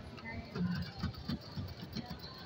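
Indistinct background voices and faint music: arcade and mall ambience around a claw machine.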